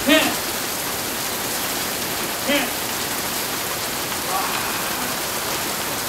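Heavy rain pouring steadily in an even hiss, with brief shouts breaking over it near the start and about two and a half seconds in.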